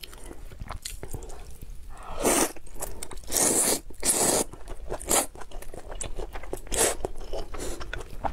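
A person slurping spicy rice noodles from a bowl of broth: several long, noisy slurps, the loudest about two to four and a half seconds in and another near seven seconds. Wet chewing and small mouth clicks come between them.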